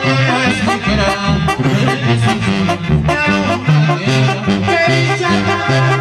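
Live Mexican banda brass band playing: a tuba carries a stepping bass line under the horns, with a steady drum beat.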